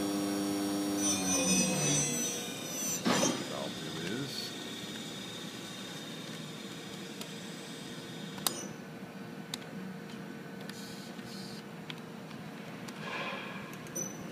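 Okuma & Howa Millac 438V machining-center spindle running with a steady whine at about 6,000 rpm, then slowing, its pitch gliding down about a second or two in. After that a quieter steady hum remains, with a few sharp clicks from control-panel keys later on.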